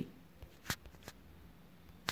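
Quiet room tone with three faint short clicks, the loudest a little before the middle.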